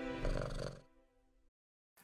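A cartoon character's short, held, wordless vocal sound. It fades out within the first second and is followed by dead silence.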